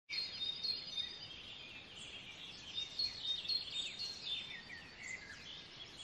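Several songbirds singing at once, a dense stream of short chirps and whistles, over a faint steady background hiss.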